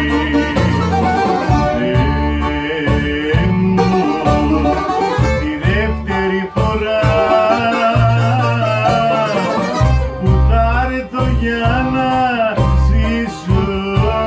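Two Greek bouzoukis playing a laïko melody together in lead and second parts (prima-seconda), with a Korg keyboard giving bass and chordal backing.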